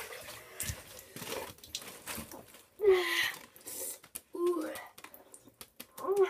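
A person's short pained vocal cries, an "ah" sliding down in pitch about three seconds in and another about a second and a half later, in reaction to ice-cold bathwater, with light water movement in the tub between them.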